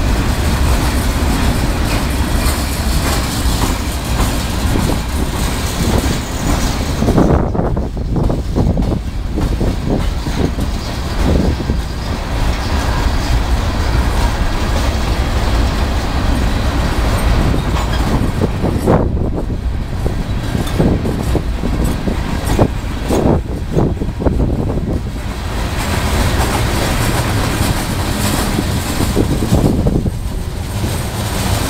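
Freight cars of a CSX train rolling past: a steady rumble of steel wheels on rail, with two spells of wheel clicks over rail joints. Wind buffets the microphone, adding a low rumble throughout.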